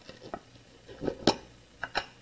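Small red plastic container being handled and its lid pulled off: a few light plastic clicks and taps, the loudest about a second and a quarter in.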